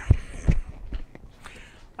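A few dull low thumps and light knocks, the loudest near the start, as someone moves about and handles equipment.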